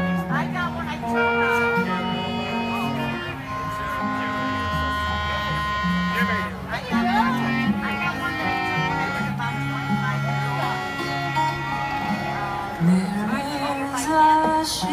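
A band playing an instrumental passage: held notes over a bass line that steps from note to note about once a second, with voices mixed in.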